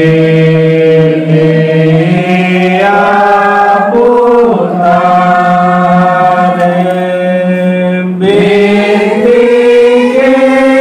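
A group of women singing a slow hymn together in unison, drawing out each note for one to three seconds before moving to the next.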